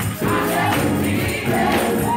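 Live gospel music: a choir singing over a drum kit, with a steady beat of drums and cymbals.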